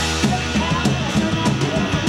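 Punk rock band playing live, with the drum kit in front: a fast, steady beat of bass drum and snare over sustained bass and guitar notes.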